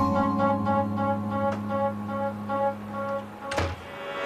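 Incidental background music: a held low note under a repeating higher note pattern. It ends about three and a half seconds in with a short rush of sound.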